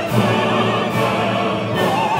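Opera soloists singing full-voiced with vibrato, backed by an orchestra and chorus.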